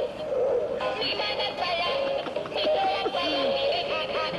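A battery-powered plush novelty toy, activated by pressing it, playing its electronic song: a short recorded singing tune with a wavering melody.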